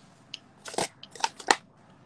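Paper wrapping crinkling as it is handled, in a few short, sharp bursts, the loudest about one and a half seconds in.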